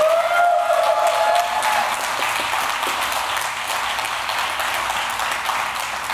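A congregation applauding steadily right after a baptism by immersion, with a long held cheer rising over the clapping in the first couple of seconds.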